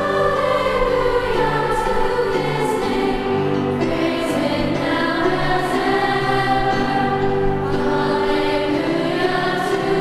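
Large women's choir singing sustained chords, with the 's' sounds of the words coming through every second or so, in the echoing space of a cathedral.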